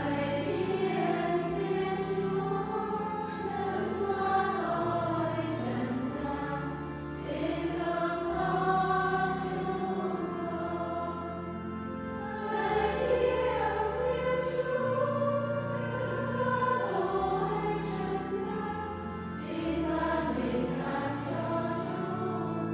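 Church choir singing a slow Vietnamese hymn, with sung phrases swelling and falling over sustained low accompaniment chords that change every couple of seconds.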